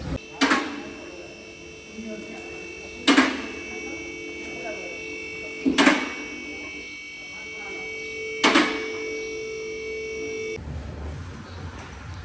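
A steady machine hum with several held tones, broken by four sharp knocks evenly spaced about two and a half seconds apart; the hum cuts off suddenly near the end.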